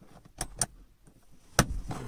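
Plastic lens cover of a Hyundai Venue's overhead map light being pressed into the roof console by hand: a few short clicks, the loudest about one and a half seconds in.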